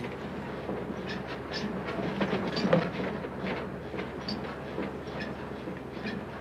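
Interior of an old bus under way: a steady low engine and road noise with constant irregular rattling and clacking of the body, seats and window frames.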